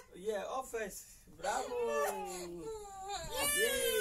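A young child whining and crying in long, drawn-out wails that fall in pitch, with a second wail rising and falling near the end.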